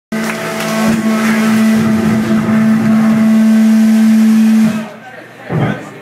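Live rock band playing loudly: one held, distorted note under a dense wash of cymbal noise, which stops abruptly about five seconds in. A voice follows near the end.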